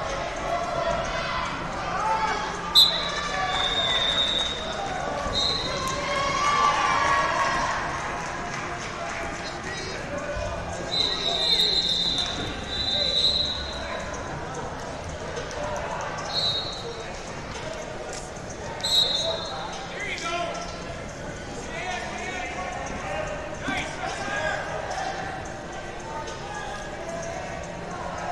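Echoing sports-hall ambience at a wrestling tournament: a steady babble of coaches and spectators calling out, cut by short, shrill referee whistle blasts from several mats, with a few sharp thumps on the mats.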